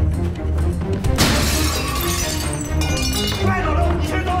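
A glass window pane shattering with one sudden crash about a second in, then bits of glass ringing and tinkling for a couple of seconds, over tense background music.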